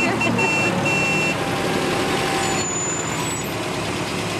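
Engine of an old military jeep running as it drives up and slows at the curb, with a few short, high beeps in the first second or so.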